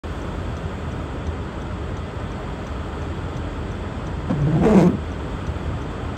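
Strong gusty storm wind blowing steadily with a low rumble, and a brief louder pitched moan about four and a half seconds in.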